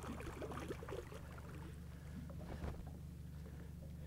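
Faint splashing and lapping of water at a boat's side as a hooked pike stirs the surface, over a low steady hum.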